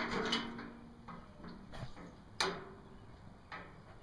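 Light handling clicks and knocks as a metal square is set against the plates of a fabricated door hinge. The sharpest click comes about two and a half seconds in, with a softer one near the end.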